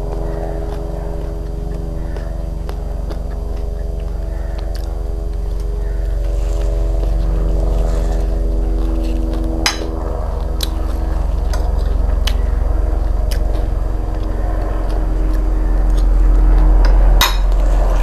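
A steady low hum with even tones beneath it, slowly growing louder. A metal spoon clicks sharply against a ceramic plate about ten seconds in and again near the end.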